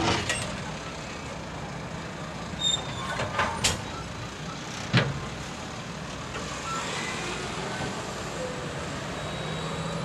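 Railroad passenger coaches in a coupling and switching move: a steady low rumble with several sharp metallic clanks between about three and five seconds in, the last of them the loudest.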